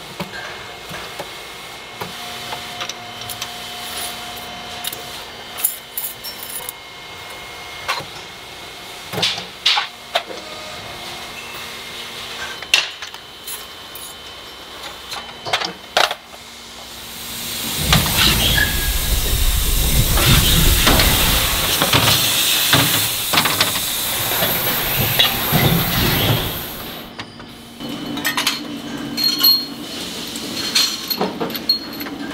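Foundry noise around a pour of molten metal from a furnace spout into a ladle: a low steady hiss with scattered metallic knocks. From just past the middle, a loud rumbling roar with hiss runs for about eight seconds, then drops off sharply near the end.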